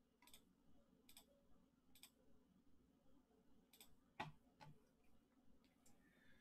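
Faint computer mouse clicks, roughly one a second, as a web page button is pressed over and over. A louder click with a low knock comes about four seconds in.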